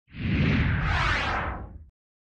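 Whoosh sound effect with a low rumble beneath it for an animated intro graphic. It swells in quickly, holds for about a second and fades out near the end.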